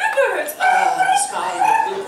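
A performer's wordless vocal sounds: a falling cry just after the start, then several short held high-pitched notes.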